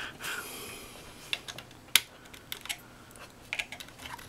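Scattered light clicks and taps from hands handling a Dell Wyse 5010 thin client's open plastic-and-metal case, with one sharp click about two seconds in.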